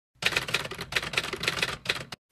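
Rapid clatter of typewriter keys, several sharp clicks a second in an uneven run that stops just before speech begins.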